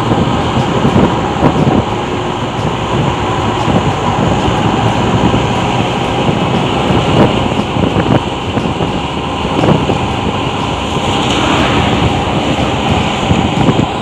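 Steady riding noise from a Honda Supra X 125 motorcycle under way: wind rushing and buffeting on the rider's microphone, with engine and road noise beneath.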